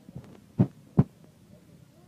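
Two dull, low thumps about half a second apart over a faint background.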